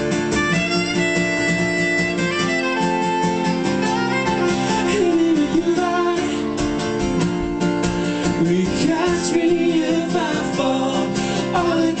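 Live band music: a saxophone plays a melodic solo with held, bending notes over strummed acoustic guitar. A singer's voice comes back in right at the end.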